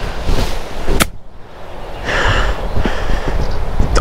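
A 58° wedge striking a golf ball on a chip shot: one sharp click about a second in, over a steady low rumble.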